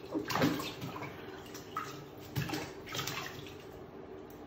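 Bathtub water splashing and sloshing as a cat dips its paw into the filled tub, in two bouts: about half a second in and again around two and a half seconds in.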